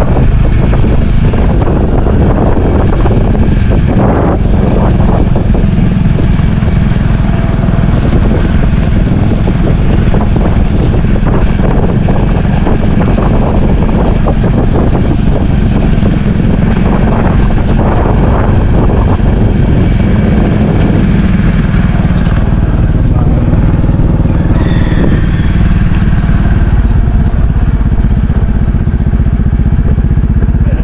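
Motorcycle engine running steadily while under way, with wind rushing over the microphone.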